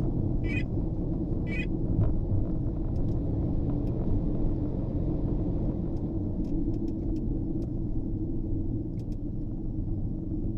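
Steady low engine and road rumble of a moving vehicle, heard from inside its cab. A short tick sounds about once a second in the first couple of seconds.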